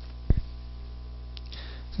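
Steady low electrical hum from the microphone and sound system, with one brief low thump about a third of a second in.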